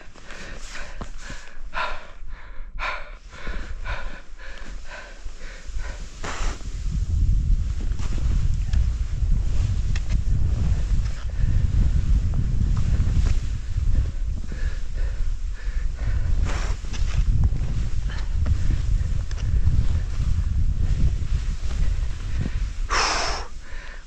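Skiing downhill through powder: skis hissing over the snow while a loud low rumble of wind buffets the microphone at speed. Short puffs of heavy breathing come in the first few seconds, and a sharp breath near the end.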